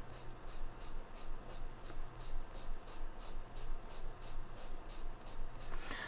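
A damp baby wipe scrubbed back and forth over a marker swatch on watercolour paper, about four strokes a second, to lift the water-based brush-marker ink. The colour lifts less than she hoped, a sign the ink is not very water-soluble.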